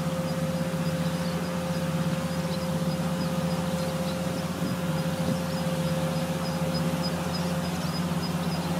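A farm machine's engine running steadily at a distance, a low even hum. A faint high chirping repeats several times a second over it.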